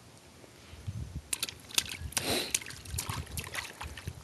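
Baby splashing the water of a shallow inflatable paddling pool: a quick, irregular run of small splashes starting about a second in.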